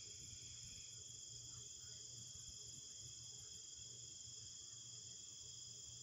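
Faint, steady chorus of crickets trilling: several even high-pitched tones held without a break, over a low hum.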